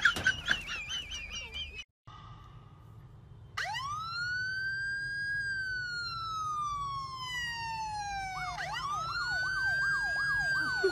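Splashing water and a high wavering cry for the first two seconds, then after a brief gap an electronic siren: one long wail that rises quickly and then slowly falls, followed near the end by a new rising wail overlaid with a fast yelp pattern.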